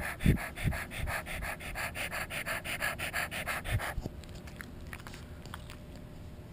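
A pug panting fast and evenly very close to the microphone, about seven breaths a second, stopping abruptly about four seconds in. A few low bumps come in the first second.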